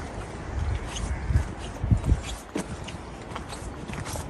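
Footsteps on a wet, stony track: a few irregular soft steps over a steady low rumble.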